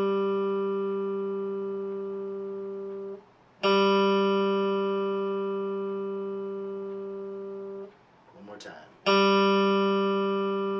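Open G string of an electric guitar plucked and left to ring while being tuned. The note is already ringing, is damped about three seconds in, and is plucked again half a second later. It is damped again near eight seconds and plucked once more about a second after that. It sits right on pitch, with the tuner showing G in the green.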